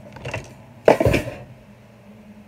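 Something falling off a wall: a short, loud crash about a second in, lasting about half a second.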